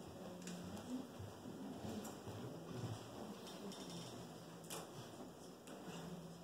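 Quiet classroom room tone with faint, indistinct low murmuring and small handling noises, including a sharp click a little before the end.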